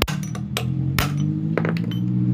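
Hammer blows on a steel shaft used as a drift to knock a wheel bearing out of a Honda Beat's alloy wheel hub. There are two loud, sharp metallic strikes about a second apart, with lighter taps between.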